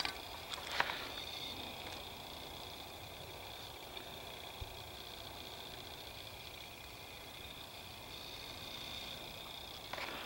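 Faint steady outdoor hiss, with a few light clicks and knocks in the first second and a couple more around the middle.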